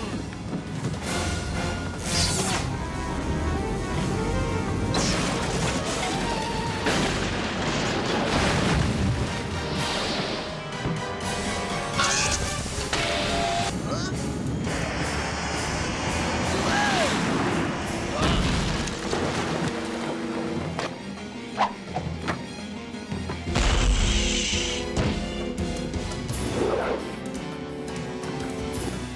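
Cartoon fight-scene soundtrack: an action music score under a string of booms, crashes and impact effects, with characters' wordless grunts and yells. A heavy low boom comes near the end.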